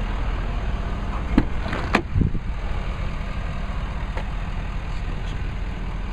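Ford 6.7-litre Power Stroke V8 turbo-diesel idling with a steady low rumble. About a second and a half in come two clicks and a thump as the truck's door is opened.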